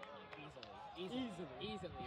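Faint voices of spectators talking and calling, a little louder from about a second in.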